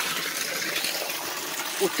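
A jet of water from a pipe splashing steadily into a fish tank that is being refilled with clean water.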